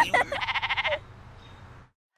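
A girl's short laugh, then a sheep's quavering bleat lasting about half a second. The sound fades out and goes silent near the end.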